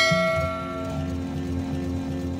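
Outro background music with a soft steady beat. A bell-like chime, the sound effect of the animated subscribe button, rings out and fades over the first second.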